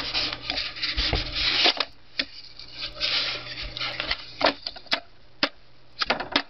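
A folding knife's blade scraping and scratching across a paperback book's cover, in rasping strokes during the first half, then a few sharp taps of the blade against the book near the end.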